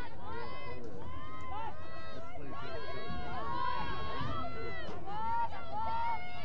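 Several women lacrosse players shouting and calling to one another on the field, many high-pitched voices overlapping.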